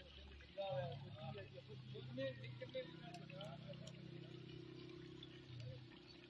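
Hot oil sizzling in a karahi as pieces of fish deep-fry over a wood fire, a faint steady hiss, with faint voices talking in the background.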